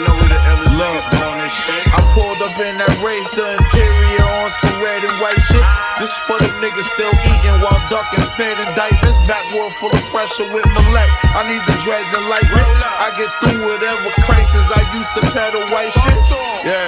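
Hip hop beat with a rapped vocal over it, deep bass hits landing about every one and a half to two seconds.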